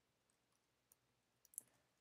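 Near silence with a few faint computer keyboard keystroke clicks, the loudest about one and a half seconds in.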